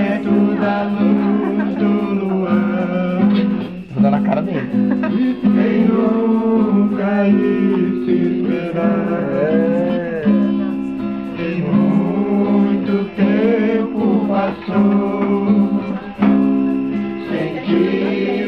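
Guitar strummed live in steady chords, with voices singing along over it.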